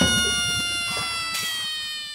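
Intro sound effect: a held electronic chord that slides slowly down in pitch and fades, with a brief shimmering swell about two-thirds of the way through.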